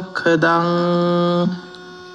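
A man's voice chanting in Sinhala devotional style, holding one long steady note that ends about one and a half seconds in, leaving a faint steady hum.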